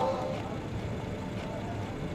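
A car engine idling steadily, a low even sound. The tail of music from the car's radio fades out in the first half-second.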